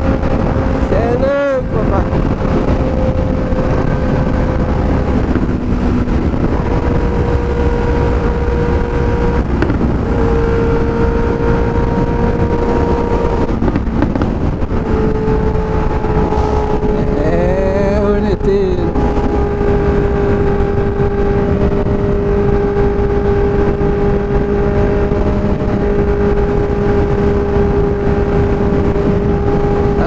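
Honda Hornet 600's inline-four engine running at a steady highway cruise, its pitch shifting slightly in small steps, under heavy wind rush. A brief swooping tone rises and falls about a second in and again around the middle.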